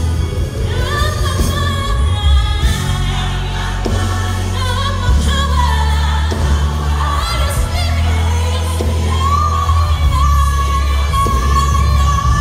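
Live gospel music: a female lead vocalist sings a wavering melody with long held notes near the end, over a choir and a band with a heavy bass line.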